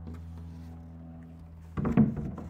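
A low steady hum in the room, with a short clatter of knocks near the end as plywood panels are handled.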